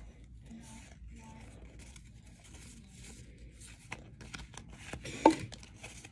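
Pokémon trading cards being slid and shuffled through the hands: soft papery rustling with quick little flicks, sparse at first and busier and louder in the second half, with one sharper snap near the end.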